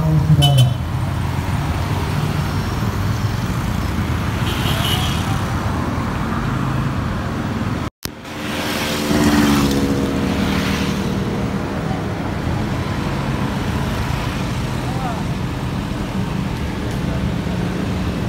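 Night street traffic with steady road noise and vehicle engines passing, one sliding down in pitch, over voices in a crowd. The sound cuts out for an instant about eight seconds in.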